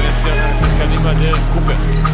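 Music with a steady bass line playing over basketball game sound, with a ball bouncing on the hardwood court.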